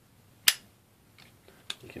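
Boker Plus Exskelibur front-flipper folding knife flicked open, the blade snapping into lock with one sharp click about half a second in: a nice solid lock-up. Two lighter clicks follow near the end.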